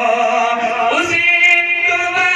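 A man singing a naat, an Urdu devotional poem, into a microphone, holding a long note and then sliding up into the next phrase about a second in.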